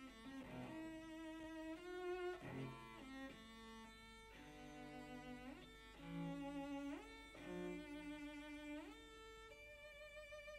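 Cello playing a slow melodic line of held bowed notes, several of them joined by upward slides in pitch.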